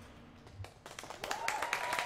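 The last note of skating music fades, then scattered hand clapping from an audience starts about a second in, with a steady high tone sounding through it.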